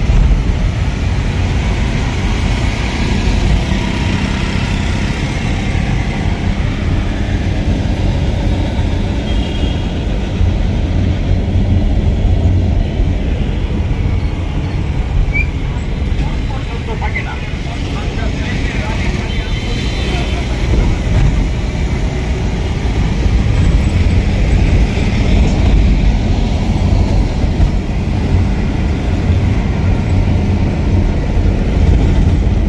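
Steady engine and road rumble of a moving ambulance, heard from inside its cabin, with the noise of passing city traffic.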